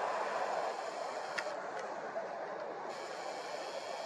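Steady, quiet background noise with two faint short clicks about a second and a half in.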